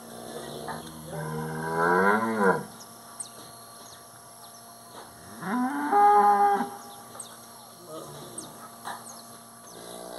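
Cattle bellowing. There are two long, loud moos: the first starts about a second in and rises in pitch before breaking off, and the second comes around the middle. A third starts just at the end.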